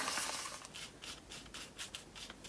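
A paintbrush scrubbing acrylic paint onto sketchbook paper in quick back-and-forth strokes, about six a second.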